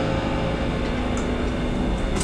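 The band's last held note fading out, one faint tone lingering to near the end over a steady low rumble of room noise.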